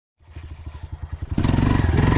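Dirt bike engine running in distinct low beats, then much louder and smoother about a second and a half in as the throttle opens and the bike moves off.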